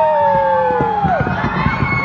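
Children's long, drawn-out shouts overlapping over crowd noise. Each voice rises, holds for about a second, then drops away, one after another.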